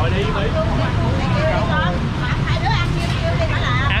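Several people talking at once in the background over a steady low rumble of street traffic.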